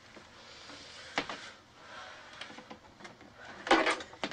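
A wooden door and its doorknob being handled: a sharp click about a second in, then a louder clatter of knocks near the end as the knob is grasped.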